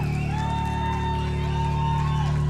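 Live band's amplified instruments through the PA: a steady low drone held under several sustained tones that waver and slide in pitch.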